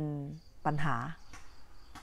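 Crickets chirping steadily in the background, a thin high-pitched trill that carries on through the pause after the last spoken word.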